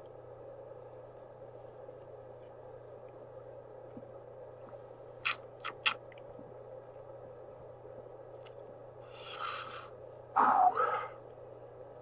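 Quiet steady room hum with three light clicks from handling a drink can a little past the middle. Near the end a man lets out a breath and then a short throaty vocal sound that falls in pitch, while he says he feels gassy from sparkling water.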